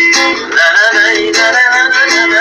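Acoustic guitar strummed in a steady rhythm, with a man singing a wordless, wavering melody over it.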